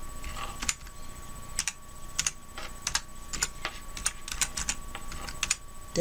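Computer keyboard being typed on: irregular key clicks, a few per second, as a word is typed out.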